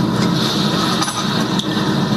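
Loud, steady hiss and room noise of a poor-quality interrogation-room surveillance recording, with a few faint clicks.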